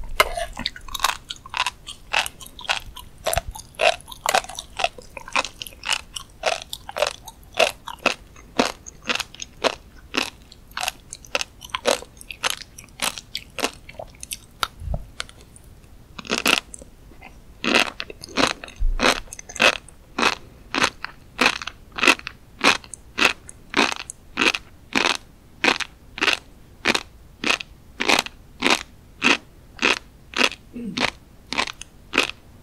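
Close-miked chewing of a mouthful of flying fish roe (tobiko), in steady chews about two a second. About halfway through, the chewing pauses for a second or two, then resumes with a fresh spoonful.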